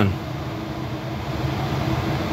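Steady background hum with an even hiss, unchanging throughout.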